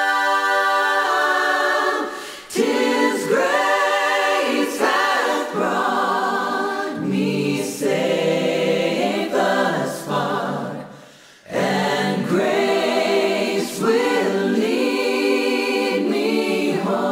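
Unaccompanied choir singing in held phrases, with brief pauses between phrases about two seconds in and again near eleven seconds.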